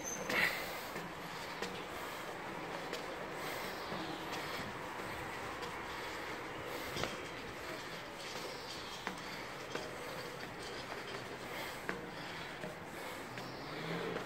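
Footsteps on a metal spiral staircase: irregular faint knocks of shoes on the steel treads over a steady background hiss.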